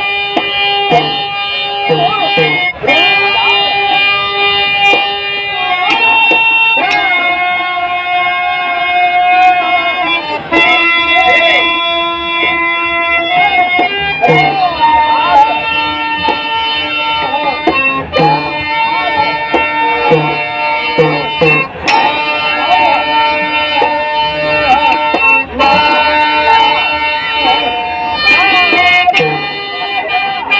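Live folk-theatre music: a reed harmonium holding sustained notes, with a voice gliding over it and regular hand-drum strokes.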